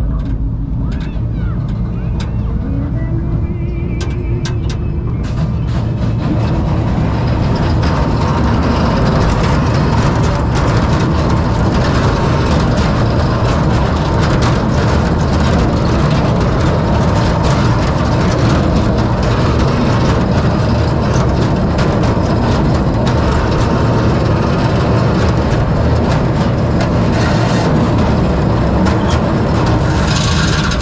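Kiddie roller coaster train rolling along its steel track, with wheel rumble and wind rushing over the microphone. The noise builds over the first several seconds and then holds steady and loud.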